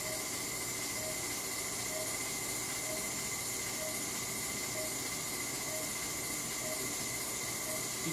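Operating-room equipment noise: a steady hiss with a faint high whine, and a faint short beep repeating about once a second.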